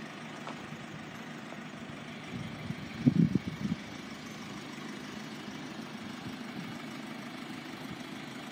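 A car engine idling with a steady low hum, broken by a brief burst of low rumbling noise about three seconds in.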